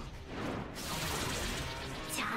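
Anime episode soundtrack: a rushing whoosh effect in the first second, then quieter background music.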